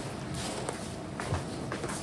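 Faint scuffing of a large cardboard box being shifted by hand, with a few light knocks.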